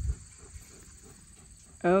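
Quiet outdoor background with a faint low rumble, then a woman's voice cuts in with an excited "Oh" near the end.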